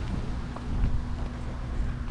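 Low rumble of wind on the microphone with a faint steady hum underneath; no distinct event.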